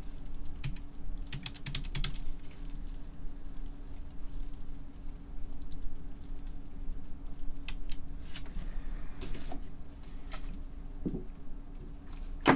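Typing on a computer keyboard: irregular runs of key clicks over a steady low hum.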